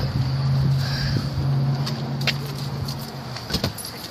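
A vehicle engine hums steadily at a low pitch, then cuts out about three seconds in. A few sharp clicks follow, and a louder knock comes near the end.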